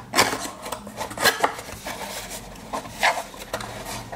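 Cardboard packaging box being handled and its flap folded open: a series of short papery scrapes, rubs and light taps.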